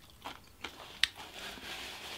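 A person chewing a mouthful of food close to the microphone, with a few short wet mouth clicks, the sharpest about a second in.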